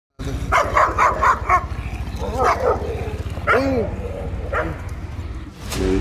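Dogo Argentino barking: a quick run of about five barks in the first second and a half, then a few scattered calls that rise and fall in pitch.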